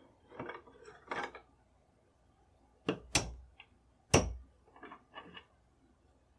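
Steel rifle parts and a screwdriver handled on a wooden workbench: scraping and clinking, then a few sharp knocks as metal parts are set down on the wood, the loudest about four seconds in, followed by softer clicks.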